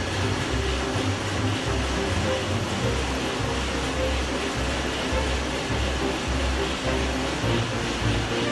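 A large marine diesel engine running steadily in a ship's engine room, heard as a continuous noisy drone. Background music with a pulsing low bass plays over it.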